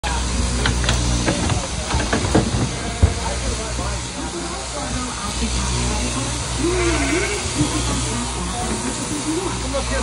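Knocking and scuffling of a ram's hooves and body on a wooden shearing board as it is wrestled and tipped onto its rump, with a sharp knock about three seconds in, over a steady low hum and hiss. Voices are heard in the background in the second half.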